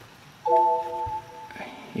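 Windows laptop system chime: a short bright chord of several steady tones about half a second in, held about a second and then fading, sounding as a User Account Control prompt pops up on screen.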